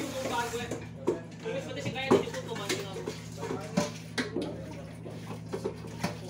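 Knocks and clatter of a pot being washed in a stainless-steel galley sink, with some running water, over a steady low hum of the ship's machinery.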